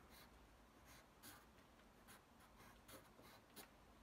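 Faint pencil strokes on paper: a graphite pencil drawing a few short straight lines, heard as separate light scratches.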